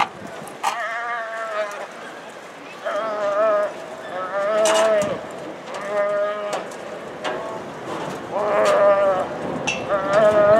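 A roped calf bawls repeatedly, about six wavering calls each under a second long, while it is thrown and held down for tying.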